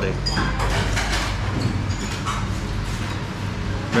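Restaurant background sound: a low steady hum with voices murmuring in the background and a few light clicks of utensils near the start.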